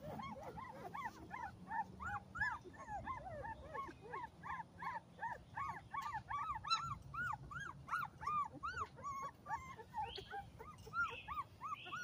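Young pit bull puppies crying: a steady run of short, high, rising-and-falling whimpers and squeals, several a second, with more than one pup calling at different pitches.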